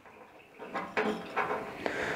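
Faint, light clicks and knocks of small steel parts being handled: a short round bar moving in a slotted flat-bar jig.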